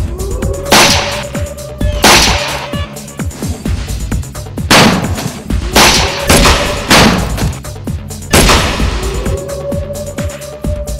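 A film-soundtrack gun battle: about seven gunshots at uneven intervals, each with an echoing tail, over background music. A rising whine follows some of the shots.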